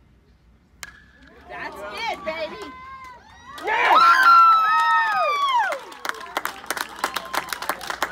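A metal baseball bat pings as it hits the ball, followed by spectators cheering and yelling, loudest in the middle, then clapping near the end.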